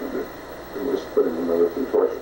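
A man's halting speech from an old tape recording played back, muffled and narrow in tone.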